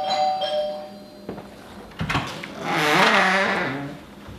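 A two-tone doorbell chime ringing and dying away about a second in. About two seconds in, a louder wavering, voice-like sound over a hiss swells up and fades.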